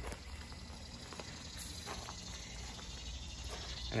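Quiet outdoor summer ambience with a steady chorus of insects chirping, and a few faint clicks.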